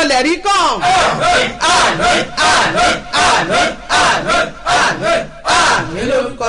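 A woman shouting prayer in loud, rapid, rhythmic bursts, about two to three a second, each burst breathy and strained.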